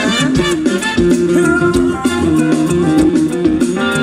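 Live funk band playing an instrumental passage: electric bass, drum kit and guitar with saxophones and trumpet, on a steady beat.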